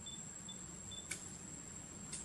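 Faint, steady high-pitched insect trill, with three short faint chirps in the first second and a single sharp click about a second in.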